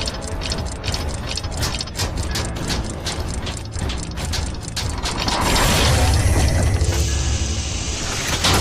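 Sound-effect track of a gear animation: rapid ratcheting clicks of turning gears, then a louder swelling whoosh with a deep rumble over the last few seconds.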